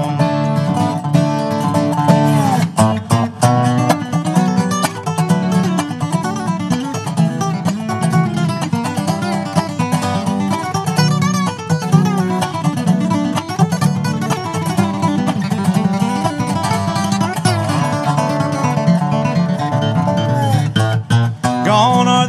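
Acoustic bluegrass-style instrumental break: a dobro plays lead lines with sliding notes over a strummed acoustic guitar, with no singing.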